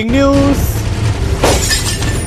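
News-broadcast 'breaking news' sound effect: a swelling rush, then a glass-shatter crash about one and a half seconds in, over a low music bed. A voice holds its last word at the start.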